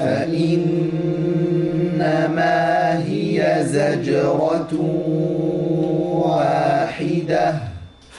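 A young man's voice reciting a verse of the Quran in melodic tajweed chant, holding long steady notes with a few short breaks.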